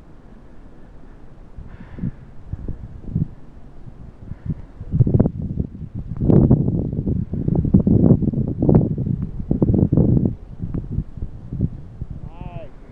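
Wind buffeting a phone microphone: a low rumble that gusts hard from about five seconds in to near the end.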